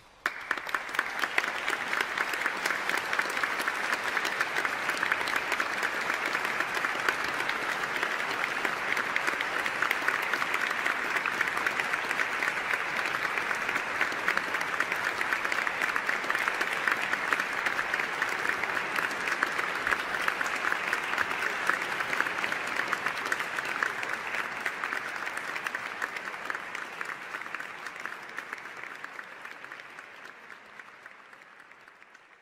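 Audience applauding, breaking out suddenly after a moment of near silence and holding steady before tapering off over the last several seconds.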